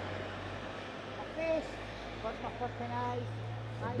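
A vehicle engine running with a steady low hum, with a few faint snatches of voices over it.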